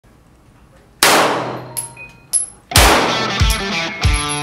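A single loud bang about a second in, ringing out and dying away over more than a second, then two short sharp clinks. Near the end, electric-guitar rock music comes in with a hard hit and carries on.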